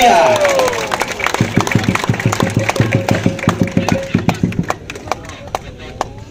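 Fast rhythmic beating of percussive thumps and claps, about seven beats a second for some three seconds, with a steady held tone through the middle. It stops a little before the end, leaving a few scattered sharp clicks.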